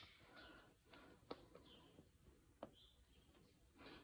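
Near silence, broken by a few faint sharp clicks of steel hoof nippers working on a horse's hoof wall during a trim.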